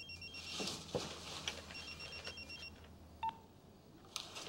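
Faint electronic trilling tone in two bursts of about a second each, a second apart, like a ringer, over a low hum that stops about three seconds in; light rustles and clicks of movement, and one short single beep just after three seconds.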